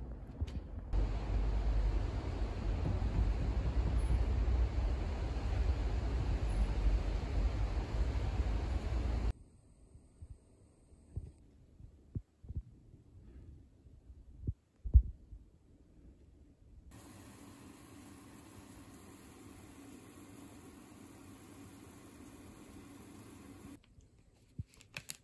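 Steady low rumble of wind buffeting the microphone, cutting off suddenly about nine seconds in. After that, a few faint clicks, and from about seventeen seconds a faint steady hum.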